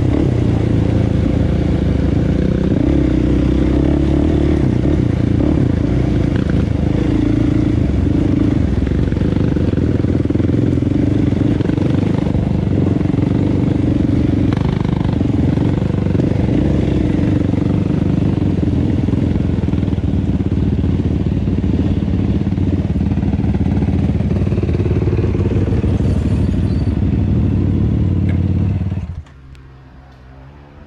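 Sport ATV engine running steadily while the quad is ridden along a rocky dirt trail, heard close up from the rider's seat. The engine sound drops away sharply about a second before the end.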